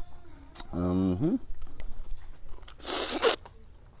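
A man's low hummed "mmm" while eating, about a second in, rising in pitch at its end, amid small clicks of chewing; about three seconds in, a short, loud rush of breath.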